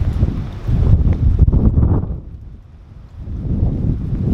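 Strong gusty wind buffeting the microphone in a storm. It is heavy for the first two seconds, dies down briefly, then picks up again near the end.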